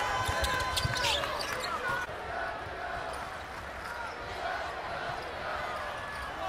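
Live game sound from a basketball court: the ball bouncing on the hardwood and sneakers squeaking, over the steady hum of the arena crowd. The squeaks and thuds are busiest in the first second.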